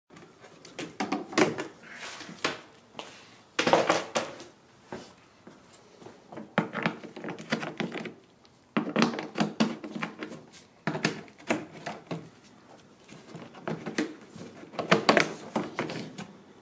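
Small hand ratchet with a 10 mm socket clicking in repeated short bursts, mixed with knocks and rattles of hard plastic trim, as quarter-turn fasteners on the rear engine-bay trim are undone and popped loose.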